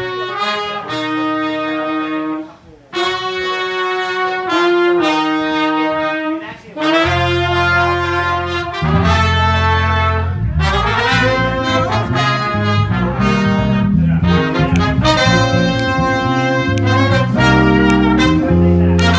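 Horn section of saxophone, trumpet and trombone playing held chords together, breaking off briefly twice. From about seven seconds in, bass comes in underneath and the band plays with the horns.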